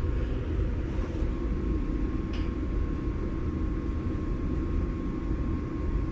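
Computer cooling fan of a freshly assembled mining rig spinning steadily while the machine goes through its power-on self-test: a steady whirring hum with a faint, steady high tone over it.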